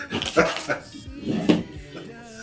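A man laughing in short bursts, with two louder outbursts about a second apart.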